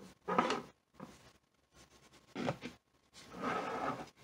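Handling sounds of a hollow dried gourd and a plastic lamp base on a wooden tabletop: short knocks and rubs in three bursts, the longest a scraping rub near the end as the gourd is pressed down onto the base.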